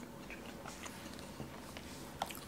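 Faint eating sounds: a metal fork cutting into a slice of dense chocolate cake on a plate, with a few light clicks, and soft chewing.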